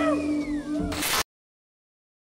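Film soundtrack: a held musical note with several short rising-and-falling glides over it, which cuts off suddenly just over a second in, leaving dead silence.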